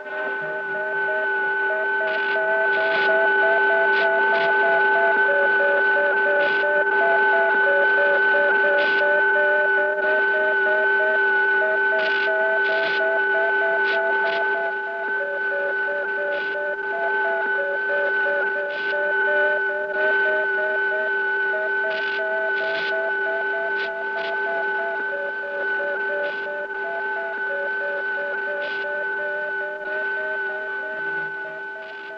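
Electronic machinery sound effect from a 1960s sci-fi film soundtrack. Several steady humming tones are held throughout, under a looping run of short beeps that step up and down between a few pitches, with scattered sharp clicks.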